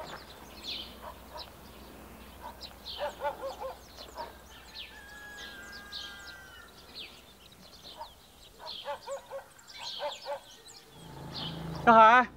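Outdoor village ambience: small birds chirping again and again, with short repeated calls of chickens at a couple of moments.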